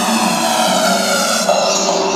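Hardstyle dance music played live over a festival sound system, in a build-up with no kick drum: layered synths with a rising sweep that climbs higher near the end.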